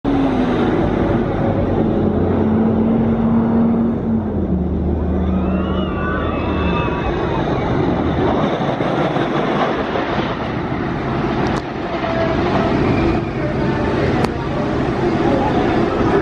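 Blue Streak's wooden roller coaster train running on its track: a loud, continuous rumble, with a low hum that falls in pitch over the first several seconds and two sharp clicks near the end.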